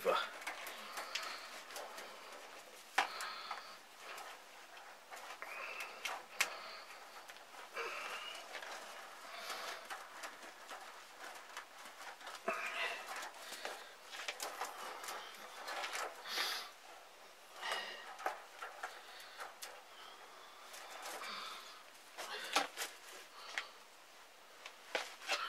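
Chicken wire mesh being bent and folded over by hand: faint, irregular rattles, scrapes and clicks of the wire, with a few sharper ticks now and then.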